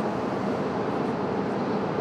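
Steady, even workshop noise of a glass factory floor, machinery or ventilation running with no distinct strokes or tones; the soldering at the bench adds nothing that stands out.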